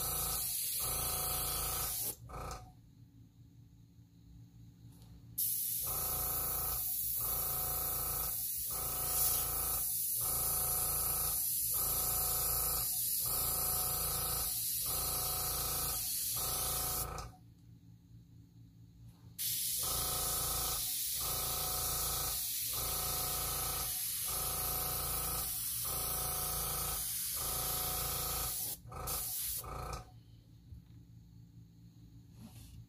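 Airbrush hissing as it blows alcohol ink across the paper, with the air compressor humming underneath and dipping about every second and a half. The air stops twice for two to three seconds, then starts again.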